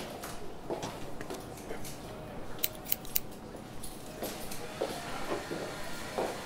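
Metal hair-cutting scissors clicking shut three times in quick succession around the middle, over low room tone.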